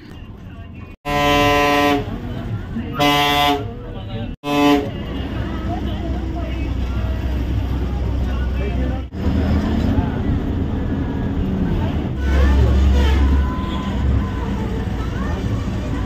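Ashok Leyland bus horn sounding three short blasts, the first the longest. The bus's engine and road noise follow as a steady low rumble under voices.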